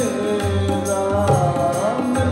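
Sikh kirtan: a man singing a shabad in a gliding melody over the steady reed tones of Nagi harmoniums, with tabla strokes keeping the rhythm.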